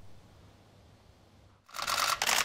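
Near silence, then near the end many camera shutters start clicking together in a rapid, continuous volley, as at a press photo call.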